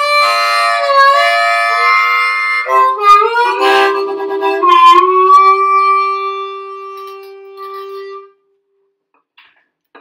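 Harmonica played cupped against a Silverfish Z dynamic harmonica mic and amplified through an amp: chords and bent notes for the first few seconds, then one long held note that fades out about eight seconds in. No feedback, even close to the amp.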